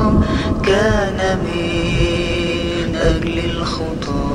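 A voice singing an Arabic Coptic Orthodox hymn in long held notes with a wavering vibrato, drawing out the line 'was for sinners'.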